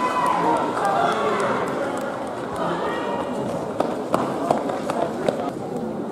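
Spectators' voices calling and cheering in an indoor athletics hall during a race, with a few sharp clicks in the second half.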